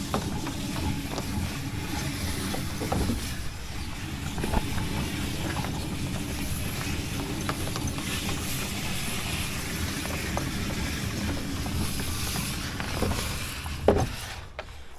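A sewer jetter's hose reel turning to wind the black high-pressure hose back in, over a steady machine motor, with scattered clicks as the hose lays onto the drum. A loud knock comes near the end.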